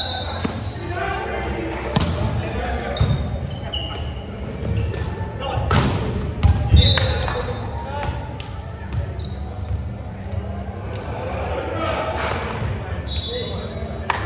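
Indoor volleyball play in a gym hall: sneakers squeak on the court floor again and again, and the ball is struck with sharp smacks several times, the loudest a little past the middle, over players' voices echoing in the hall.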